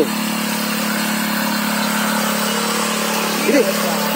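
Small engine of a single-wheel power weeder idling steadily, one even hum at a constant level.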